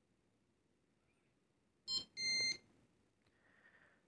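Two short electronic beeps about two seconds in, a brief multi-tone chirp followed by a steady half-second tone: the Google TV Streamer's confirmation sound that the remote has paired.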